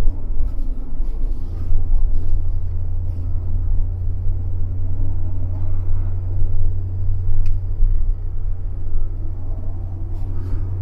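A steady low rumble, rising and falling a little in loudness, with a few faint scattered clicks.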